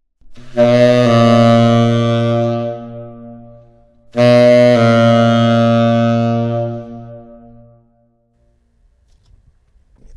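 Tenor saxophone played twice through a semitone approach: a short tongued D-flat that slurs down to a held C. Each C sustains for two to three seconds and fades away.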